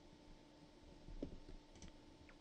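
Faint clicks of a computer mouse, a few in quick succession in the second half, over a steady low hum.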